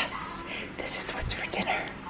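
Quiet, mostly whispered speech: a spoken "yes" followed by soft, hissy murmuring.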